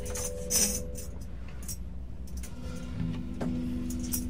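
Loose instrument sounds from a band setting up to play: a held chord fades out, a sharp click comes about half a second in, and then a single low note starts and holds, with a knock near the end.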